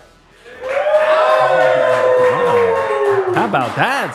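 A drawn-out cheer: one long whoop that slowly falls in pitch over about three seconds, over crowd-like noise. A man's voice talks underneath.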